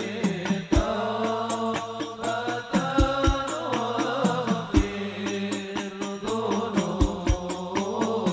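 A man sings a devotional Islamic song into a microphone in long, ornamented phrases. Behind him is live percussion: quick, regular light strikes with a deep drum beat every second or so, over a held low accompaniment.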